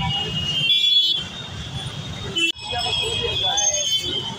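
Busy road traffic rumbling with vehicle horns honking, a shrill multi-tone horn loudest about a second in. The sound breaks off sharply about halfway through, and a voice is then heard over the traffic.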